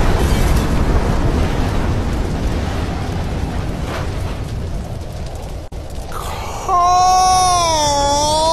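Explosion sound effect: a loud blast that trails off in a long rumble, slowly fading over about six seconds. Near the end a long drawn-out voice cries out.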